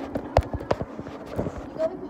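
A series of irregular sharp knocks and clicks, a few tenths of a second to half a second apart, over a steady low hum of room noise.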